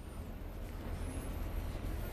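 City street traffic: a steady low rumble of vehicles, faint beneath a pause in the talk.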